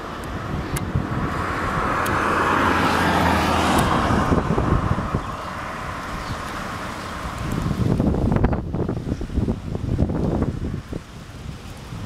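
A road vehicle passing by: its tyre and engine noise swells over a few seconds and then fades away. Near the end, wind gusts rumble on the microphone.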